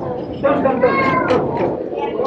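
A child's high-pitched voice, drawn out and rising then falling, over the babble of a crowded indoor hall.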